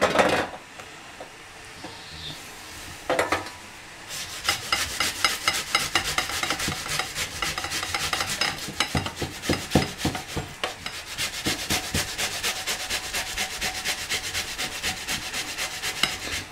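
Boiled beetroot being grated on the medium holes of a metal box grater: rhythmic rasping strokes that start about four seconds in and keep going, after a single knock about three seconds in.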